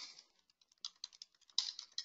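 Faint typing on a computer keyboard: a brief pause, then quick clusters of keystrokes from about a second in.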